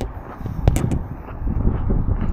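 Handling noise and wind rumble on the camera's microphone as it is pressed against a metal viewing tube. A knock comes at the start and another under a second in.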